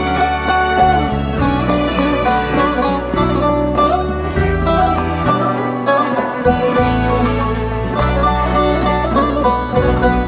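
Instrumental break in a Turkish folk song: plucked string instruments play a running melody over a steady bass, with no singing.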